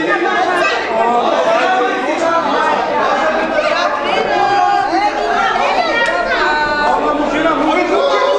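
Many people chattering at once, their voices overlapping into a steady babble.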